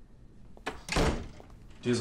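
A panelled wooden apartment front door being pushed shut with a single thud about a second in.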